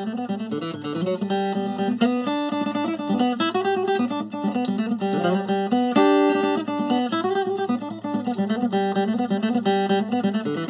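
Acoustic guitar music: a picked tune, a steady run of notes over bass notes.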